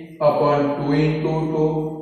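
A man's voice holding one long, drawn-out sound at a steady pitch, in a chant-like, sing-song way, starting a moment in after a brief pause.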